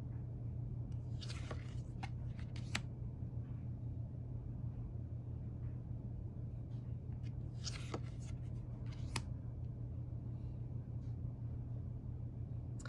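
Tarot cards being handled, with short papery swishes and light taps as cards are slid off the front of the deck and tucked behind it. This happens twice, once a second or two in and again about two-thirds of the way through, over a steady low hum.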